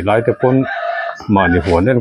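A rooster crowing once, about half a second in, lasting under a second, between stretches of a man's talk.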